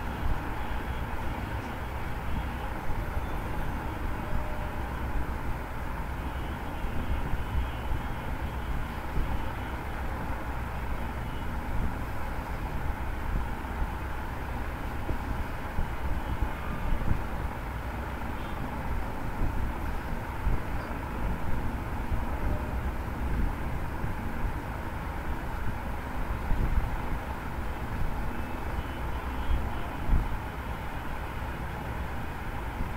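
Steady background noise with a low rumble, unchanging throughout and with no distinct events.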